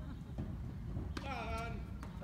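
A single sharp knock a little past one second in, followed at once by a short call from a person's voice, over a steady low rumble.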